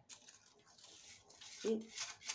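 A pot of vegetable soup on the stove simmering with a faint steady hiss, as dried herbs and spices are tipped into it.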